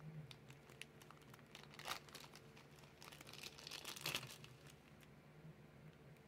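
Faint crinkling and rustling of product packaging being handled, with slightly louder rustles about two and four seconds in.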